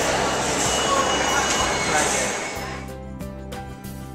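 Noisy subway station ambience with people's voices, fading out about three seconds in as background music with steady held notes takes over.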